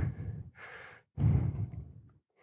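A man breathing out into a handheld microphone: a faint breath about half a second in, then a louder exhale from about a second in.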